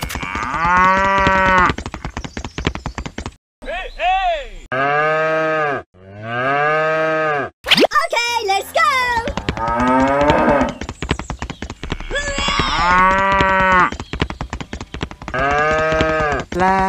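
A cow mooing over and over, about seven long calls with short gaps between them, laid over a fast steady clicking.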